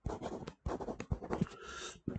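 A pen scratching and tapping across a writing surface in quick short strokes as a word is handwritten.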